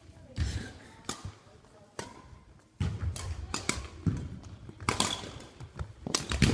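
Badminton rally: racket strings striking a shuttlecock in sharp cracks about once a second, with shoes thudding on a wooden gym floor.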